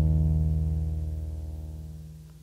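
Music: a single low instrumental chord ringing on and fading steadily.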